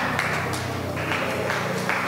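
A soft, sustained keyboard chord held steady, with hand claps keeping a slow beat of about two claps a second.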